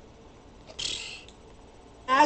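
A short breathy hiss, about half a second long, about a second in: a sharp breath or sniff from the man at the microphone between remarks.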